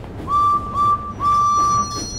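Steam locomotive whistle blown three times: two short toots and then a longer one, each starting with a slight upward slide in pitch.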